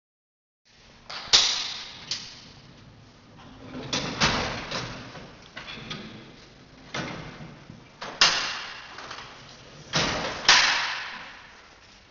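Ambulance stretcher and its slide-out loading tray being pulled from the back of the ambulance: a series of about nine sharp metallic clanks and knocks, each ringing on in the echoing hall.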